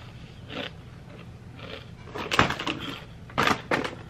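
Crinkling and rustling of a snack bag being handled, in short crackly bursts about two seconds in and again near the end.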